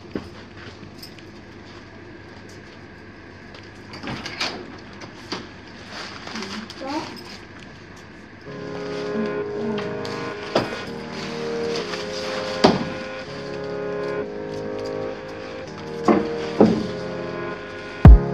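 Quiet room tone with a few sharp knocks and clicks and faint voices, then background music comes in about halfway through and runs under further clicks.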